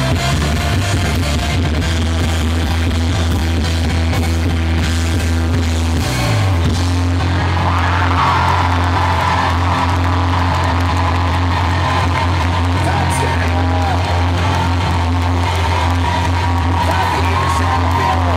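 Live rock band playing loud through a PA, heard from the audience: heavy bass and drums with guitar, a downward bass slide about six seconds in, and a male lead singer's voice over the band in the second half.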